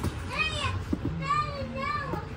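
A young child's high-pitched voice, about three short wordless calls that rise and fall in pitch.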